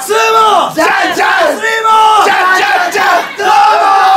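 Several male voices singing and shouting together without instruments, loud drawn-out calls that rise and fall in pitch, one after another with short breaks between.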